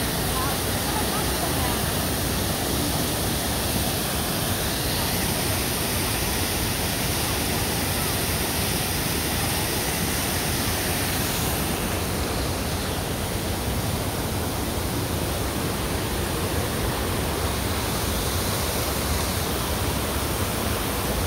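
Garden fountain's water jet splashing steadily into its basin, a continuous rushing of falling water.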